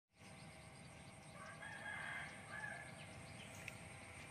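A rooster crowing faintly, one drawn-out call beginning about a second and a half in.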